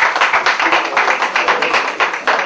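Audience applauding, with many individual hand claps loud and close.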